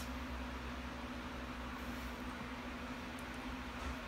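Steady low electric hum with a faint hiss, as from a running pedestal fan, and nothing else standing out.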